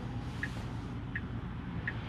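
Tesla turn-signal indicator ticking, a short high click about every three-quarters of a second, three times, over a low steady cabin hum while the car waits to turn.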